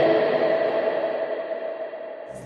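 Electric guitar's ringing note fading away with an echo tail, dying down steadily over the two seconds.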